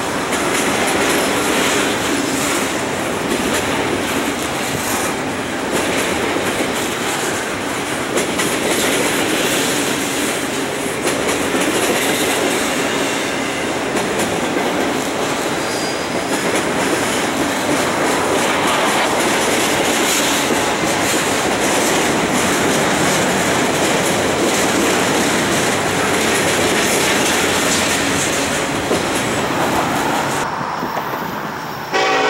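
Double-stack intermodal freight train passing close by: the steady noise of steel wheels rolling on the rails as the loaded well cars go by.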